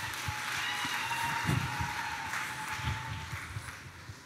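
Audience applause, fading out near the end, with a faint steady high tone underneath.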